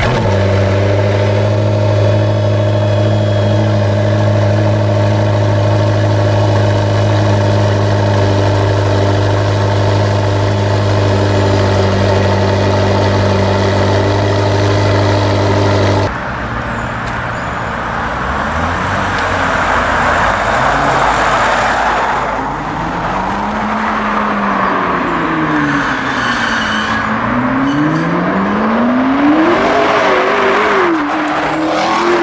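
McLaren P1's twin-turbo V8 idling with a steady note, then, after a sudden change about halfway through, its revs rise and fall several times as the car moves off.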